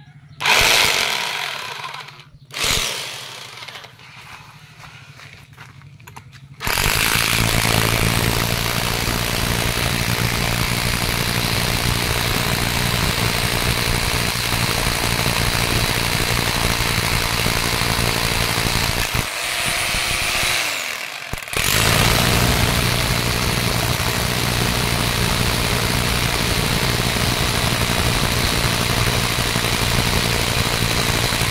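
Ingco 1050 W rotary hammer: two short bursts of the motor that spin down, then a long, steady run as it hammer-drills into a stone. The run winds down and stops briefly about two-thirds of the way through, then starts again.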